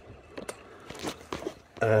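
Faint scattered clicks and rustles of a hand-held camera being moved and handled.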